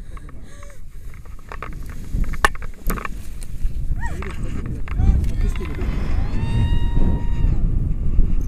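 Wind rumbling on a helmet camera's microphone as a tandem paraglider launches, with a couple of sharp clicks in the first half. Near the end the passenger lets out a long, high held cry of about a second and a half.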